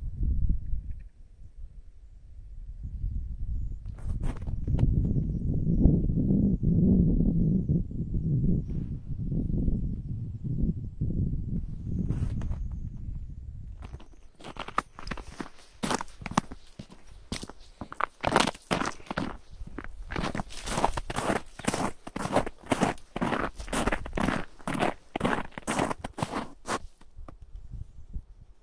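Footsteps crunching on frozen shore ice at a steady walking pace, about two steps a second, through the second half. Before them, a low rumble fills the first half.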